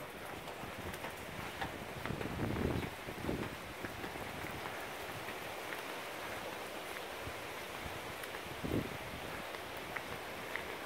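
Steady outdoor background hiss with no distinct source, broken by a few faint, soft sounds about two to three seconds in and again near the end.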